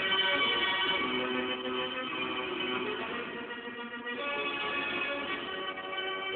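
Music with held, sustained notes from a record played through a 1930s Philips Symphonie 750A tube radio's loudspeaker, picked up by an old record player's crystal pickup.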